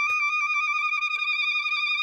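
One high note held steady without any wavering: a sustained tone from the cartoon's soundtrack.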